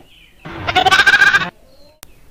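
A goat bleating once: a loud, quavering call about a second long, starting about half a second in.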